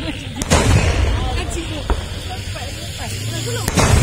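Traditional Hari Raya cannons (meriam) being fired: two loud booms, about half a second in and near the end, each followed by a low rumble.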